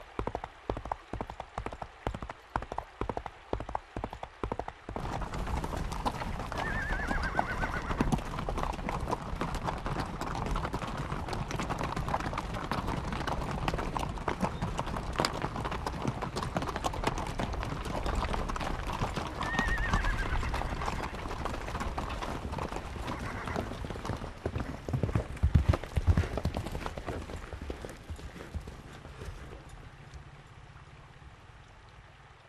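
Hoofbeats of a single galloping horse for the first few seconds, then a dense clatter of many horses' hooves as a mounted troop rides along, with a horse whinnying twice. Near the end the hoofbeats fade.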